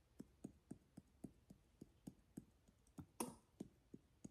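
Faint, even taps, about four a second, as a spice bottle of cinnamon is tapped to shake cinnamon out onto a teaspoon. One tap a little after three seconds is louder, with a brief rustle.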